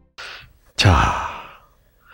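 A man's short breath followed by a sigh falling in pitch, close on a head-worn microphone.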